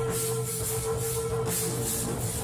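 A live rock band playing through the stage PA, with drums and cymbals struck in a steady rhythm over a bass line and a long held note, without vocals.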